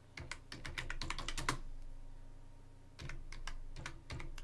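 Typing on a computer keyboard: a quick run of about a dozen keystrokes in the first second and a half, then a pause and a few more keystrokes near the end.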